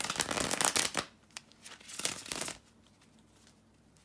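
A deck of tarot cards being riffle-shuffled by hand: a crackling riffle of about a second, then a second riffle starting about a second and a half in.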